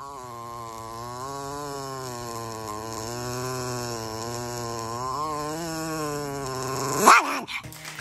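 A small dog's long, unbroken growl, low and even with a slowly wavering pitch, ending in a short louder burst about seven seconds in.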